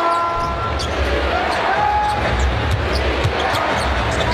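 Live game sound in a basketball arena: a basketball bouncing on the hardwood court over the steady hum of the crowd.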